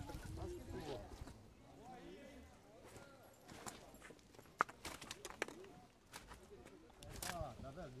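Indistinct talking, then a scattering of sharp clicks and knocks from about three and a half seconds in, the loudest a little past the middle.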